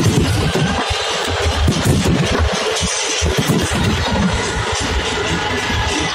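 Fireworks display: a continuous dense crackle with many sharp bangs from aerial shells and sparkling ground fountains, with a low rumble underneath and music playing along.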